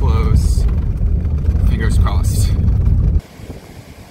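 Steady low rumble of a vehicle driving on a bumpy dirt road, heard from inside the cabin. It cuts off suddenly about three seconds in, leaving only a faint background.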